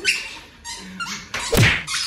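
A stick whacks down hard about one and a half seconds in, with a loud thunk, amid shrill yelps and squeals from the people playing.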